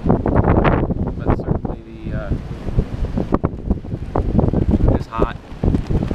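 Wind buffeting the camera's microphone in uneven gusts, with brief voices in the background about two seconds in and again near the end.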